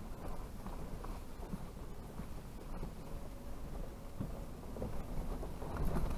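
Low, steady rumble of a Toyota 4Runner rolling slowly down a rough dirt trail, heard from inside the cab, with a few faint knocks as it crosses the uneven ground.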